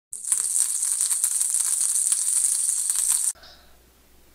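Fast, high-pitched rattling, like something being shaken, for about three seconds, then a sudden cut to faint room tone.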